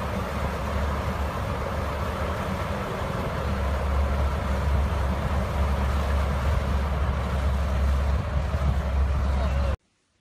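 Large golf-green cooling fan running: a steady rush of air over a low hum, stopping abruptly near the end.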